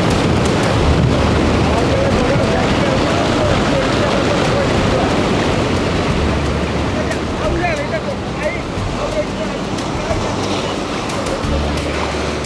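Surf breaking on a beach, with gusts of wind buffeting the microphone and faint voices in the background.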